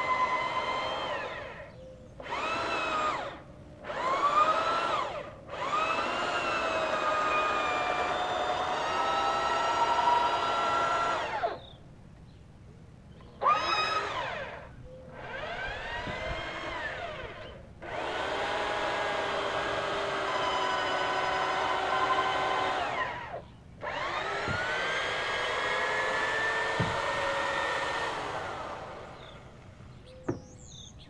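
Electric drill with a 5/8-inch bit boring a pilot hole through a wooden dock piling, run in repeated bursts of a few seconds with short stops between. Its motor whine rises each time it spins up and dips as the bit bogs down in the wood chips.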